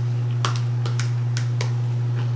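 A steady low hum, with five or six light clicks and taps scattered through it.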